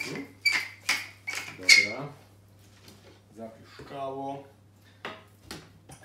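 Pepper mill being twisted to grind pepper: a run of sharp crunching strokes, about two to three a second, over the first two seconds.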